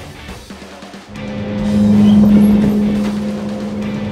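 Rock background music with guitar. About a second in, a steady low hum comes in, swells, then eases off.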